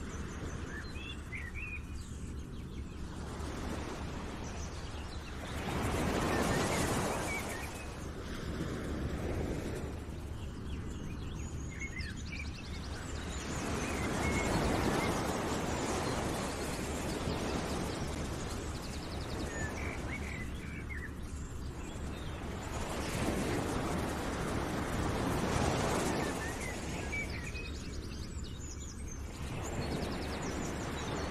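Nature ambience used as a background track: small birds chirping over a continuous hushing noise that swells and fades several times, about every eight seconds.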